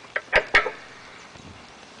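A few sharp clicks and taps in quick succession, the loudest about half a second in, as a gloved hand handles a burst dual run capacitor in a heat pump's sheet-metal cabinet. After that there is only low background noise.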